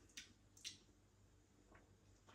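Near silence with two faint, brief wet mouth smacks, one about a fifth of a second in and one just past halfway, as a mouthful of stout is savoured.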